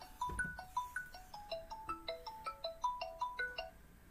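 Phone ringing with a melodic ringtone: a quick tune of short notes, about six a second, that stops shortly before the end.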